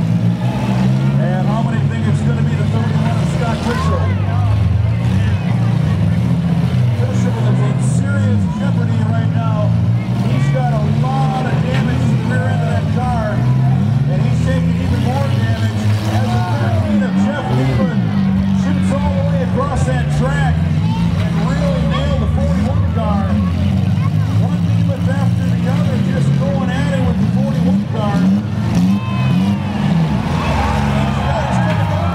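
Several demolition-derby compact cars' engines running and revving hard together, their pitches rising and falling unevenly as the cars push and ram one another.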